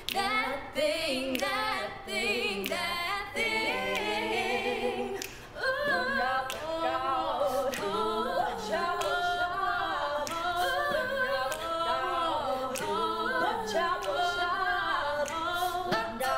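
Female vocal group singing a cappella in close harmony, several voices layered over one another with vibrato, with a steady beat of sharp clicks behind the voices.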